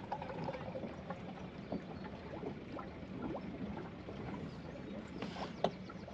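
Water lapping and trickling against the hull of a rigid inflatable boat as it floats off, over a steady low hum, with a couple of light knocks near the end.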